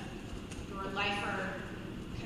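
Speech: a woman talking into a podium microphone over a gym's public-address sound, her words not made out.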